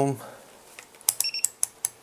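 Handheld multimeter rotary switches being turned to ohm mode: a quick run of about six detent clicks in the second half, with a short high beep from one of the meters in the middle of them.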